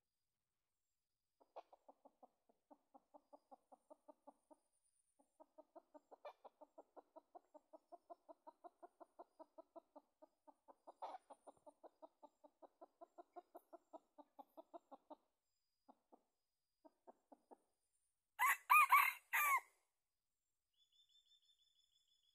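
Junglefowl rooster clucking in a long, even run of about four clucks a second, then one short crow near the end, the loudest sound.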